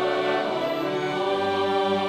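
Mixed choir of men's and women's voices singing long, sustained chords. A lower part joins about halfway through.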